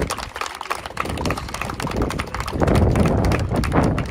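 A small group clapping: many separate claps, growing denser in the second half, with wind rumbling on the microphone.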